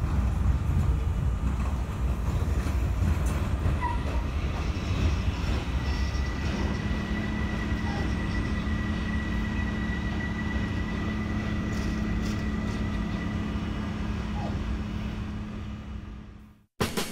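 Subway train running with a steady low rumble. A thin, steady high whine comes in about six seconds in and drops out around thirteen seconds. The sound fades away at the end.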